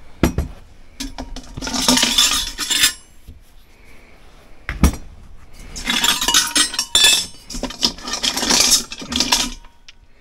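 Small metal tableware and brass pieces clinking and rattling against each other as they are rummaged through and handled. Two jangling spells, the second one longer, with a single sharp knock between them.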